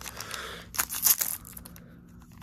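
Foil booster pack wrapper being torn open by hand, with crinkling; the loudest tearing comes about a second in.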